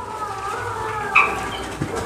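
Birds calling in the background, with thin wavering chirps and one short, sharper call a little over a second in.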